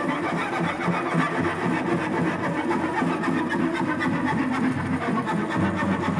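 Solo cello bowed with rapid, scratchy repeated strokes, giving a dense, rattling, machine-like texture over a low pitch in place of a clean sustained note.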